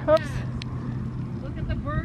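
A woman's brief 'oops', then a steady low hum with faint voices in the background.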